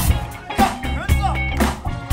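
Live funk band playing a groove: drum kit and bass with electric guitar on top, the beat landing about twice a second.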